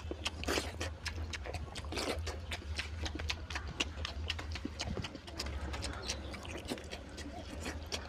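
Close-up mouth sounds of eating: wet chewing and lip smacks, many quick clicks in a row over a steady low hum.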